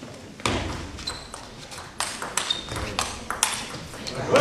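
Table tennis rally: the celluloid-type ball clicking sharply off the players' bats and the table, in a quick string of hits starting about half a second in.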